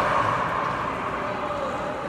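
Steady background din of a shopping mall: an even wash of noise with no distinct events.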